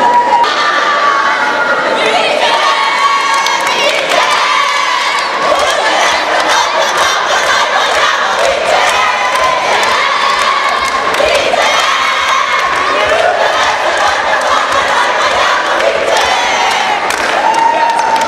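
A group of teenage girls cheering and shouting together in high voices, loud and unbroken, in the celebration of a championship win.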